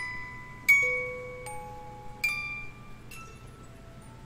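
Figurine music box playing a slow tune: single plucked notes from its metal comb, about five in four seconds, each ringing and fading. The loudest note comes a little under a second in.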